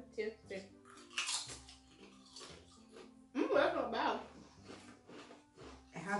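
Pringles potato chips being bitten and chewed: a series of short, crisp crunches, loudest about a second in and again around three and a half seconds, over quiet background music.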